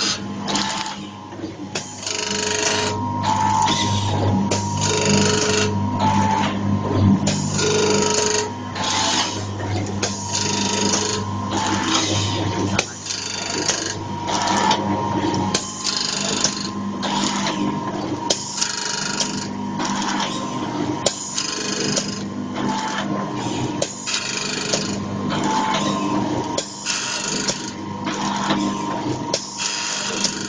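Powder bag-packing machine with a screw feeder running through its cycle: a noisy burst repeats roughly once a second over a steady motor hum and whine.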